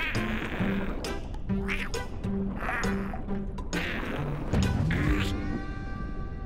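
Cartoon underscore music with a bouncy, plodding bass line, broken by splashy whoosh effects about once a second. Near the end comes a comic sound effect: a falling low glide, a sharp hit, then a rising, pitched sweep.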